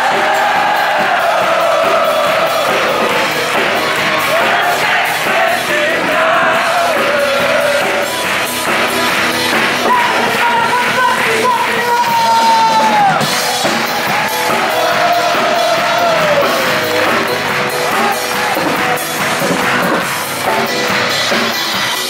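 Live band music played in a concert hall: a male voice sings long, sliding notes through a microphone over piano and a drum kit, with the audience heard in the hall.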